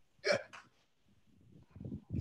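A single short, breathy vocal sound from a man on a video call, about a quarter second in, followed by a faint click and then quiet.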